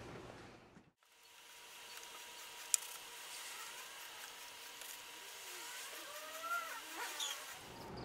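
Faint outdoor background with a single sharp click about three seconds in, and a distant motor vehicle rising and falling in pitch over the last few seconds.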